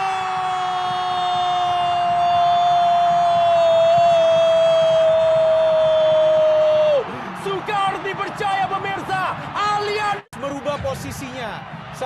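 Football commentator's long goal call: one held, high-pitched shout of "gol" that dips slightly in pitch and lasts about seven seconds. Excited commentary follows, cut off by a brief dropout about ten seconds in.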